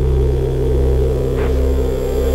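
Ambient electronic music: a deep, steady synthesizer drone with a grainy, noisy layer above it, and a brief swoosh about one and a half seconds in.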